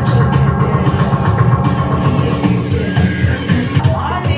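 Music playing loudly, with a steady beat and heavy bass.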